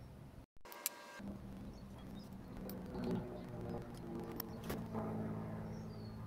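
A screwdriver and pry tool working the steel-backed seal out of an SKF hybrid ceramic rotor bearing: a few sharp metal ticks spread through, over a faint steady hum. The sound cuts out briefly about half a second in.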